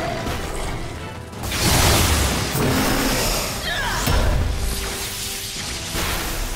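Dramatic soundtrack music mixed with cinematic sound effects. A rushing swell with a deep boom comes about a second and a half in, after a brief dip, and another heavy low impact follows around four seconds in.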